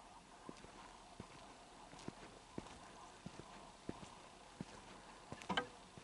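Faint footsteps of a person walking at a steady pace along a dirt road, about three steps every two seconds, with a louder scuff or rustle near the end.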